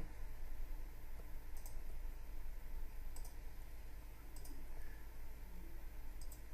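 Computer mouse button clicks: three short, light clicks spaced more than a second apart, each heard as a quick double tick of press and release, over a faint steady low hum.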